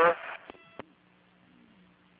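A short electronic beep on the launch commentary radio loop, about half a second in, lasting a fraction of a second. A faint steady low hum from the audio feed follows.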